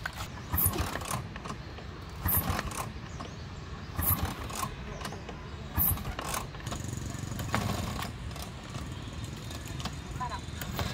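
Vintage Vespa scooter being kick-started: four hard kicks on the kickstart lever, each a short burst of the two-stroke engine turning over. The kicks come about every second and a half to two seconds. From about two-thirds of the way through, a steadier running engine sound follows.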